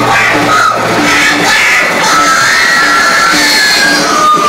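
Live psychedelic space rock band playing loud, with long held notes and short repeated notes over a dense, steady wash of sound.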